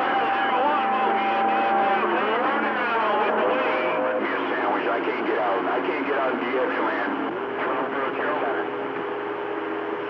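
CB radio on channel 28 receiving several stations at once: garbled, overlapping voices through the radio's narrow-band sound, with steady tones underneath that change pitch a few times as carriers key up and drop on the same channel.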